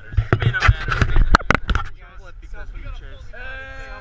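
Knocks and rubbing on a handheld action camera's microphone as it is turned around, over a low rumble, for about two seconds. Then, a little after three seconds in, several people start a loud, long held group yell.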